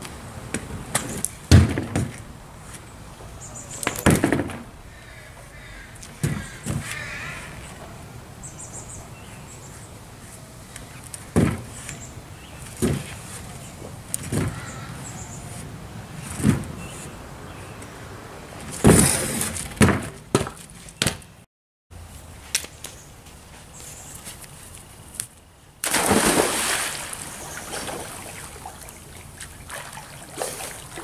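Stunt scooter being ridden and landed on a plywood board during trick attempts: a scattered series of sharp knocks and clattering bangs from the deck and wheels hitting the wood. Near the end a steadier rushing noise takes over.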